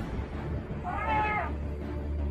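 A single short cat-like meow call about a second in, rising and then falling in pitch, over a low steady hum.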